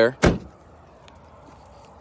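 A single short thump of a 2022 Dodge Charger's trunk lid being pushed shut and latching, about a quarter second in.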